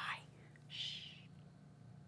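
A woman's soft "shh", one short hushing hiss about three-quarters of a second in, a call for quiet.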